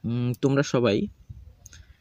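A man's voice speaking briefly for about a second, with a sharp click about a third of a second in, then fading to faint room sound.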